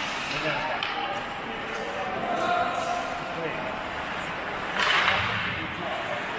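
Ice hockey play in an indoor rink: skate blades on the ice, sharp clicks of sticks and puck, and players' voices calling out, with a louder half-second rush of noise about five seconds in.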